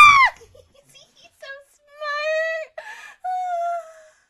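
A voice: a loud excited exclamation falling in pitch, then two long, high-pitched, drawn-out vocal cries, about two seconds and three and a half seconds in.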